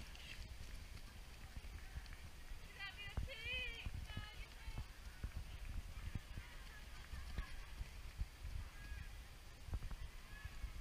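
Footfalls of cross-country runners on grass as a pack passes, heard as low, irregular thuds. There are faint distant shouts about three to four seconds in.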